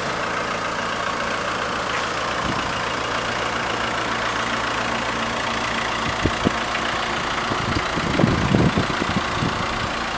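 Volkswagen Transporter T4's 1.9-litre turbodiesel idling steadily. A few short low thumps come past the middle, and a louder low rumble about eight seconds in.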